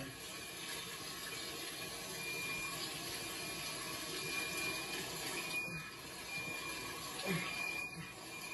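Steady rushing noise like running or spraying water, with a faint high beep repeating about once a second, heard through a television's speaker.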